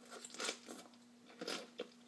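A person chewing a mouthful of raw cabbage and apple salad, with a few quiet, irregular crunches.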